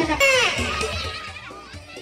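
Background music with a beat cuts off just after the start. It gives way to a child's high, falling shout and the voices of children playing, which fade down.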